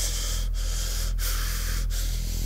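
Heavy, rapid breathing in regular rushes, about three every two seconds, over a low steady drone.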